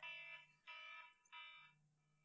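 Timer alarm going off with three faint electronic beeps, each about half a second long: the wait between challenge levels has run out.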